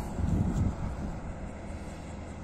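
Combine harvester running as it cuts a chickpea field: a steady low engine drone.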